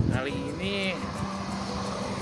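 Background music with a wavering melodic line and a long held low note, over the low rumble of road traffic.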